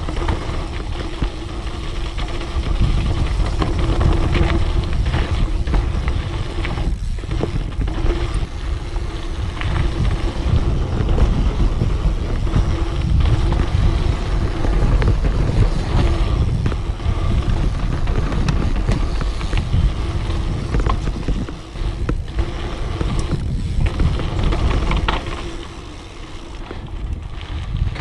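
Wind rushing over a helmet camera's microphone and a dirt jump bike's tyres rolling fast down a dirt trail, with scattered clicks and clatters as the bike goes over bumps. The noise eases briefly near the end.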